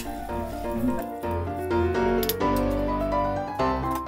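Background instrumental music with held notes that change every second or so, one tone sliding slowly upward in the second half.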